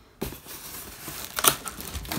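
Cardboard packaging and plastic wrap rustling and scraping as a hand opens an inner cardboard flap in the box, with a sharper crackle about one and a half seconds in.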